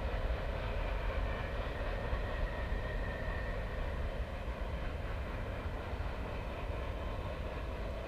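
A freight train's cars rolling away down the track, heard as a steady low rumble that slowly fades as the tail of the train recedes.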